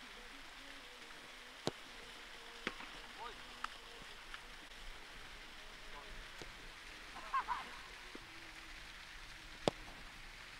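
Footballs being kicked and struck on an open pitch: several sharp, single thuds of boot on ball and ball on goal, the loudest near the end, over a faint steady outdoor hush. A brief distant shout is heard about seven seconds in.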